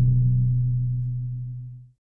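Final held note of a logo jingle: one low electronic tone with a few faint overtones, fading steadily and then cutting off just before the end.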